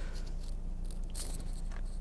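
Faint handling of a Hot Wheels blister card, with a brief light scrape of plastic and cardboard in the fingers about a second in, over a steady low hum.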